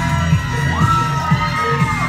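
A crowd shrieking and cheering over loud pop music with a heavy bass line.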